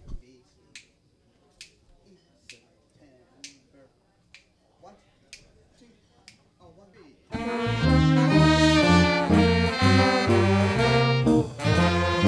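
Finger snaps counting off a slow tempo, evenly spaced a little under one a second. About seven seconds in, a small jazz band's horns come in together with full sustained chords over low baritone saxophone and bass notes.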